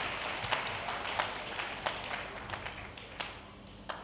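A congregation applauding in a large hall, the clapping dying away to a few scattered claps near the end.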